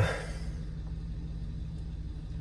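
Van engine idling: a steady low hum heard from inside the cab.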